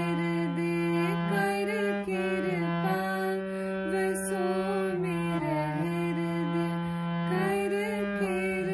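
Harmonium playing a slow shabad melody, its reeds sounding sustained notes that step from one pitch to the next over held lower notes.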